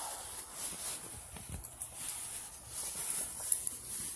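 Faint handling noise: soft rustling with a few small clicks and knocks as a smartwatch with a metal bracelet is moved about on a cloth-covered surface.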